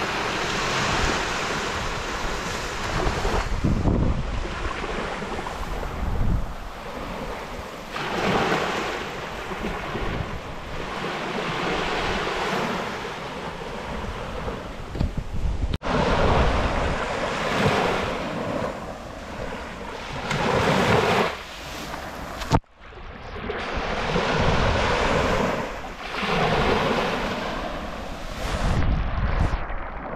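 Small waves breaking and washing up onto a sandy beach, the surf swelling and falling back every few seconds, with wind buffeting the microphone. The sound cuts out abruptly twice, briefly, past the middle.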